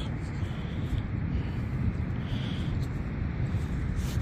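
Steady low rumble of handling noise on a hand-held phone microphone as it is moved, with a few faint scuffs.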